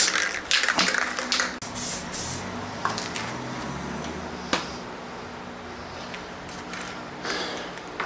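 Aerosol can of high-build plastic primer filler rattling rapidly as it is shaken, its mixing ball clicking against the can. About two seconds in comes a hiss of primer being sprayed, which fades, then a short spray burst near the end.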